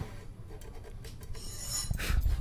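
A nut file rasping in the low E string slot of an acoustic guitar's nut, lowering the slot because the string sits too high at the nut. It goes in a few faint strokes, with a longer, higher-pitched rasp near the end.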